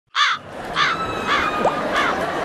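Cartoon crow-caw sound effect, caws repeated about every half second right after a sudden silence. It is a comic editing gag marking an awkward, stunned moment.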